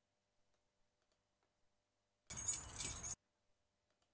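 A short recorded sample of keys jangling is played back once. It lasts a bit under a second, starts about two seconds in and cuts off abruptly.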